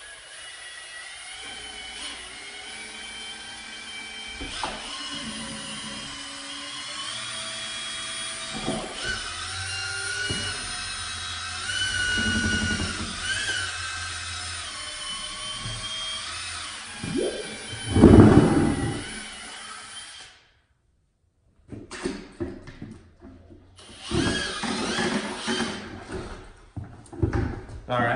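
Cordless drill spinning a mixing paddle in a bucket of primer, its motor whine wavering in pitch as the speed changes, with a loud thump near the end of the mixing; the drill stops about twenty seconds in. Scattered knocks and handling sounds follow in the last few seconds.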